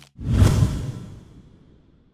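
Whoosh sound effect with a deep low boom, swelling in sharply just after the start and fading away over about a second and a half.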